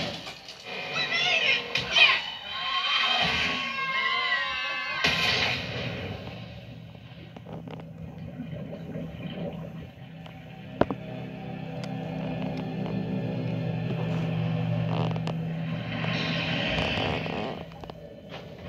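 An animated film's soundtrack playing through a TV, recorded off the screen: several characters screaming for about the first five seconds, then sustained orchestral score with a deep steady low drone.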